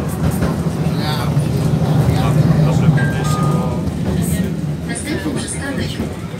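Tram running, heard from inside the passenger car: a steady low rumble that fades near the end, with two brief high tones about three seconds in and people talking in the background.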